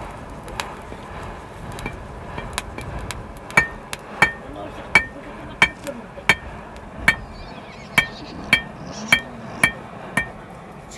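Blacksmith's hammer striking hot iron on a small anvil. A few light taps come first, then steady ringing strikes about one and a half a second apart.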